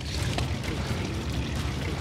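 Water sloshing against the side of a boat, a steady rushing noise over a low rumble.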